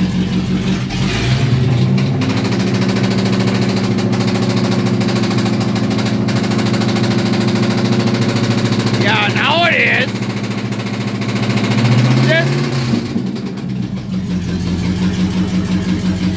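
Car engine revved up from idle about a second in, held at a raised, steady speed, then let back down to idle at about 13 s. No knock is showing while it runs: it is being revved to chase down a knock thought to come from the transmission.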